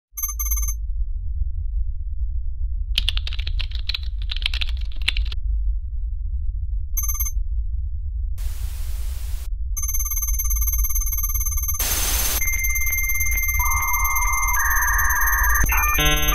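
Computer-hacking sound effects over a constant low electronic hum: short beeps, a patch of crackling data noise, a burst of static hiss, then steady high electronic tones. Near the end come held beeps that step from pitch to pitch and then switch quickly back and forth.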